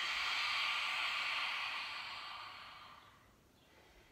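A woman's long, audible open-mouthed exhale, a breathy sigh that fades out over about three seconds.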